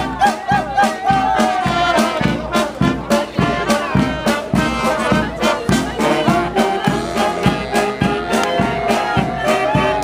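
Street brass band (banda) playing a lively tune, with trumpets and trombones over a steady drum beat.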